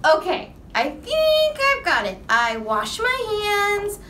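A high-pitched, childlike puppet voice performed by a woman, speaking in a sing-song way with several long drawn-out vowels.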